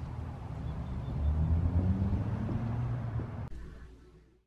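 A car passing, its low engine rumble swelling about a second in and fading away. The sound cuts off near the end.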